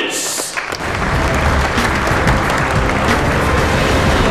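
A dinner crowd applauding as loud music with a heavy bass comes in about a second in and carries on.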